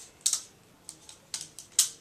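Short plastic clicks from a Braun Cruiser beard and head shaver's adjustable guard being moved between length settings: several separate clicks, the loudest near the end.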